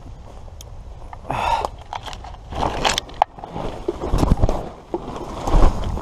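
Rustling and scraping of plastic tarps, sticks and brush being pushed past at close range, with scattered clicks and low thumps of handling, growing louder in the second half.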